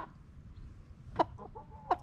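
Rooster giving short clucks, two sharp ones about a second in and near the end, with a brief steady note between them.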